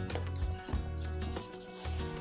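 Cloth rag rubbing in repeated strokes over the wet chalk-painted wooden side of a desk, wiping some of the fresh paint off. Background music plays under it.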